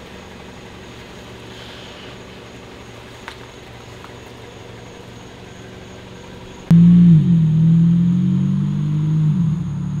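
Faint steady hum of a car engine idling as the car is moved, then about two-thirds of the way in a sudden, much louder low droning tone starts and holds, dipping briefly in pitch twice.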